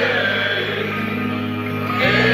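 Live acoustic-led metal ballad from the stage, recorded from the crowd: the band holds a steady chord, with one sung note gliding down at the start.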